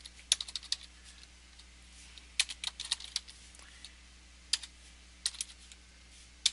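Typing on a computer keyboard: quick clusters of keystroke clicks with pauses of a second or so between them, and single taps near the end.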